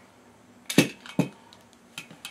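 Two sharp metallic clicks about half a second apart, the first the louder, from a Sig Sauer 1911 Scorpion pistol and its magazine being handled during a magazine swap.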